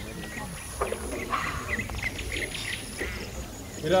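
Open-air café ambience: small birds chirping in short repeated notes, with faint voices in the background.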